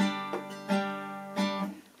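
Acoustic guitar strummed several times on a held chord, each strum ringing on, then dying away near the end.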